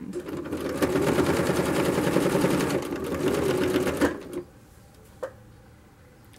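Janome electric sewing machine running at a fast, steady stitch as a narrow folded fabric strip is fed under the needle, stopping about four seconds in.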